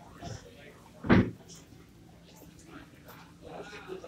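Background voices of people talking, with one short, loud thump about a second in.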